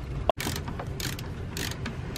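Ratchet wrench clicking in short, irregular runs as a bolt holding a stabilizer fin to an outboard motor is tightened down.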